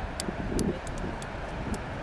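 Wind buffeting the microphone: an uneven low rumble, with a few faint clicks.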